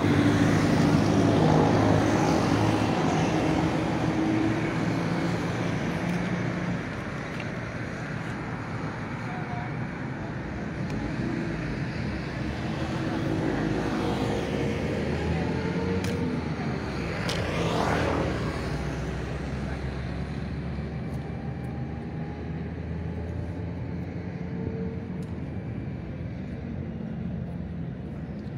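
Street traffic with a car engine running close by at the start, fading away over the first several seconds. Another vehicle passes about 17 seconds in, over steady road noise.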